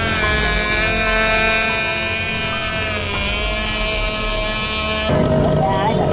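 A radio-controlled model fishing boat's motor running with a steady, high whine rich in overtones, wavering slightly in pitch. About five seconds in, it gives way to a broader background noise.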